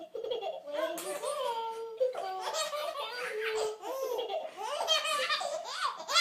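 A baby laughing in a near-continuous string of laughs.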